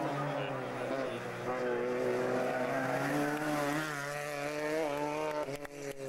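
Rally car engine revving hard as the car accelerates past and away, its pitch climbing and falling back a few times as it changes gear. A few sharp clicks near the end.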